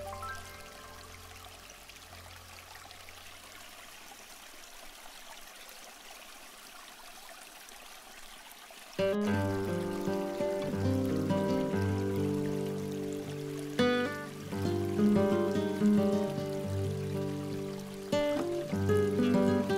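A soft, steady trickling-water hiss, then background music with held, layered notes that starts suddenly about halfway through and is much louder.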